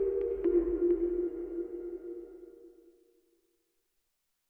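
Short electronic outro sting: a held synth tone with a few light clicks over it, fading out about three seconds in.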